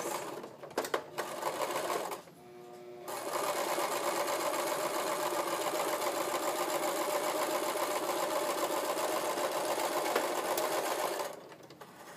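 Electric domestic sewing machine stitching a line along a folded baby hem. It runs briefly in the first two seconds, pauses, then sews steadily for about eight seconds from about three seconds in and stops shortly before the end.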